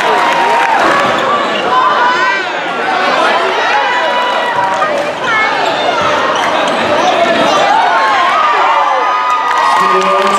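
Sound of a live basketball game in a gymnasium: crowd and player voices calling out and chattering over one another while a basketball is dribbled on the hardwood floor.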